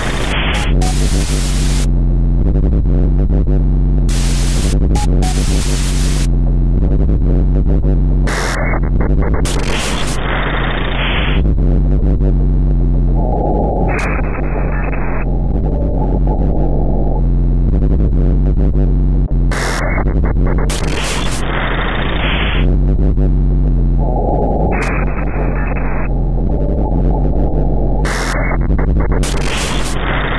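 Electronic noise music: a loud, steady bass drone under dense distorted noise whose top end switches abruptly between filtered bands, some dull and some reaching very high. The pattern of switches repeats about every 11 seconds.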